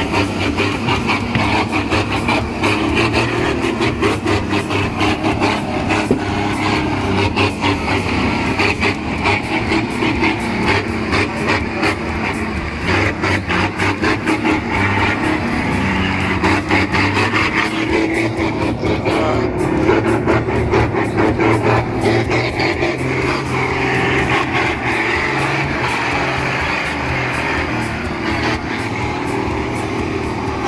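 Engines of a Nissan Navara pickup and a loaded Isuzu Forward truck running steadily under load as the pickup tows the truck on a rope out of mud.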